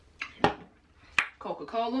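Two sharp clicks of hard objects being handled, about three-quarters of a second apart, with a short rustle just before the first; a woman's voice starts near the end.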